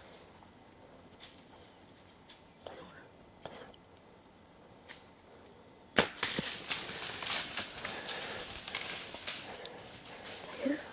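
A bow shot at a doe: faint scattered rustles in the leaves, then a single sharp crack of the released bowstring about six seconds in. This is followed by several seconds of loud rustling and crashing through dry leaves as the hit deer runs off.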